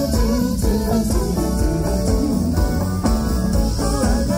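Live pop band playing an instrumental passage over a festival PA, guitar to the fore over bass and drums.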